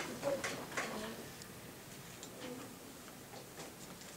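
Quiet classroom: scattered light clicks and taps at uneven intervals, with faint voices in the first second or so.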